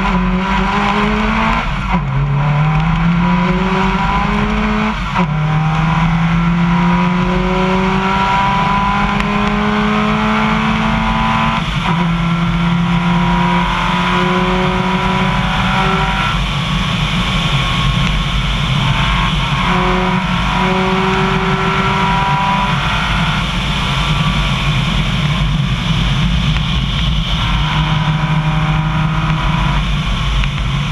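Subaru WRX's turbocharged flat-four engine accelerating hard, its pitch climbing through each gear and dropping sharply at each of several upshifts. A steady hiss of tyres running on a gravel road sits underneath.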